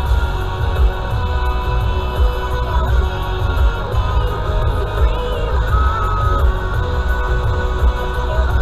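Music with a heavy bass and held notes over it.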